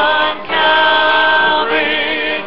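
A woman soloist singing with a choir, holding long notes with vibrato, with a short break about half a second in.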